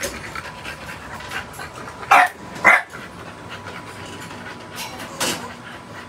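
An American bully puppy panting steadily, with two loud, short breathy bursts about two seconds in and a weaker one near the end.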